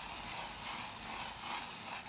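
Pencil scratching steadily across drawing paper as circles are sketched, the level swelling a little with each stroke.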